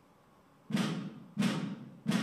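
Two drum beats, evenly spaced about two-thirds of a second apart and each ringing out, starting a steady drum beat after a near-silent moment.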